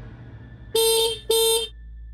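A scooter horn honked twice in quick succession, two short steady beeps.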